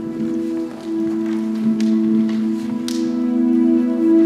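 Instrumental introduction to a worship song: a held, steady chord on a keyboard instrument. A few soft clicks and taps sound over it, from the congregation standing and opening their binders.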